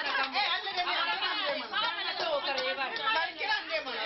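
Many women's voices talking and calling out at once, overlapping chatter from a crowded room.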